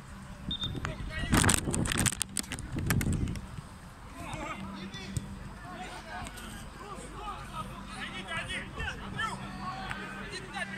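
Several people calling out and talking across an outdoor football pitch. A loud burst of noise comes about one to three seconds in, followed by scattered shouts from many voices.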